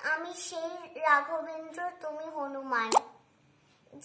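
A young boy's voice reciting a Bengali devotional verse in a sing-song chant, with drawn-out held notes. About three seconds in the voice stops with a short pop, followed by a brief pause.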